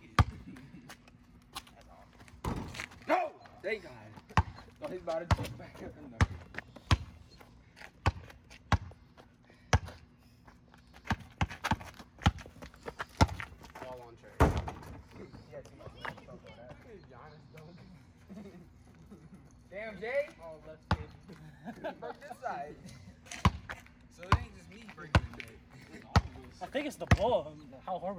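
A basketball bouncing on an asphalt street during a pickup game: irregular sharp thuds from dribbles and bounces throughout, with voices now and then.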